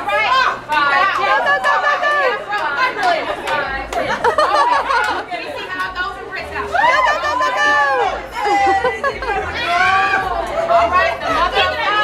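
Several women talking and calling out over one another: overlapping chatter.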